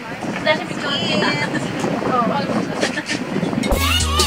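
Indistinct voices over a steady outdoor wash of noise, with background music with a bass beat coming in near the end.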